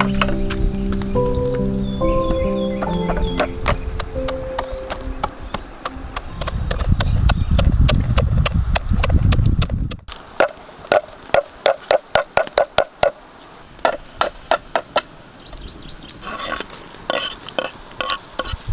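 Soft background music fades out in the first few seconds and is followed by a low rumbling for a few seconds. Then a wooden pestle knocks down on dry rice grains in a metal pot, about three evenly spaced strokes a second, with a few more knocks near the end.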